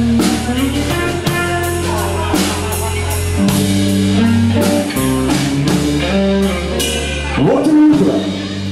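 Blues-rock band playing an instrumental passage: electric guitar over held bass guitar notes and a steady drum kit beat.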